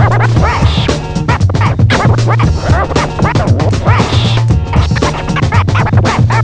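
Vinyl record scratched by hand on a DJ turntable, in quick back-and-forth pitch sweeps. It plays over a looping beat with a steady bass line.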